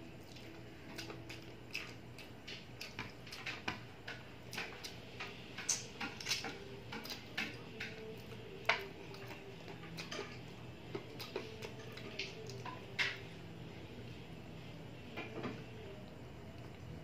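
Eating sounds of a man chewing and sucking on spicy adobo chicken feet, heard as irregular smacks and clicks a few times a second. Two of them, near the middle and later on, are louder than the rest.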